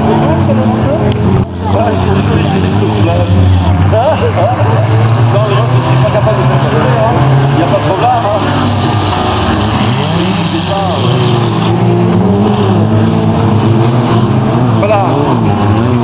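Several race cars' engines running hard on a dirt track, revving up and down as they accelerate and slow around the course, with voices talking over them.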